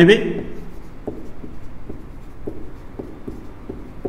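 Marker pen writing on a whiteboard: a series of short strokes, about two or three a second, as a line of text is written.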